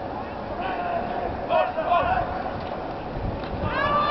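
Indistinct shouted voices of players and spectators at an outdoor football game over a steady open-air background, with a few short calls about half a second to two seconds in and another starting near the end.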